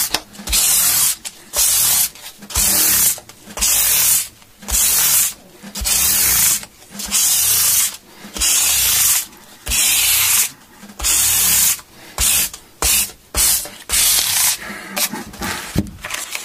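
Sanding block rubbed back and forth along a guitar's wooden fingerboard, the frets out for a refret: about one stroke a second, quicker and shorter near the end.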